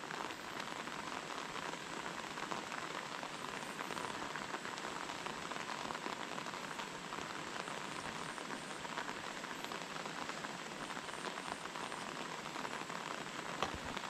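Steady rain falling on the surface of a lake, an even, unbroken hiss.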